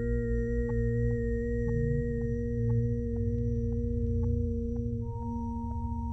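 Ambient electronic drone: several steady pure tones held together over a low rumble, with a soft tick about twice a second. One high tone fades out partway through, and a new, higher-middle tone enters about five seconds in.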